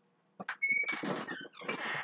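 A kitchen door or cupboard being opened: a couple of clicks, a brief high squeak, then rustling as things are moved about.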